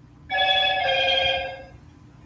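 A loud two-note chime, the second note lower, ringing for about a second and a half before fading.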